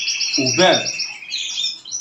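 Caged canaries singing: a continuous run of fast rolling trills of repeated high notes, with several birds overlapping.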